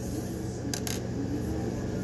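Two quick, light metallic clicks close together, a little under a second in, from the small steel parts of a SCCY CPX-2 9mm pistol being handled during takedown, with the takedown pin just removed. A steady low hum runs underneath.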